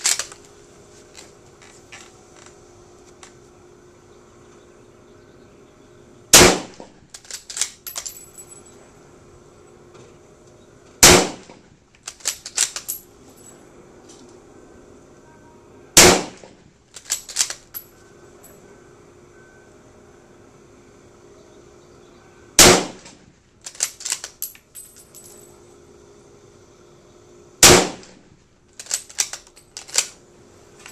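Five shots from a scoped Yugoslav M24/47 Mauser bolt-action rifle in 8mm Mauser, fired roughly five seconds apart. After each shot comes a quick run of metallic clicks as the bolt is worked for the next round.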